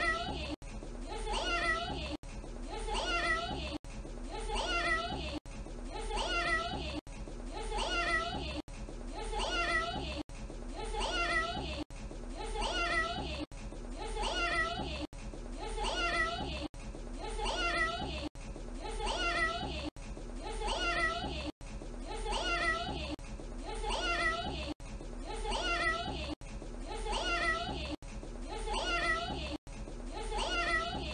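A small child's voice saying "meow" in imitation of a cat. The same short clip repeats over and over, with an abrupt cut about every one and a half seconds.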